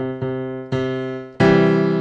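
Electronic keyboard with a grand piano sound: a single note, the C of the first scale degree, struck a couple of times, then about a second and a half in a louder C major triad is struck and left ringing.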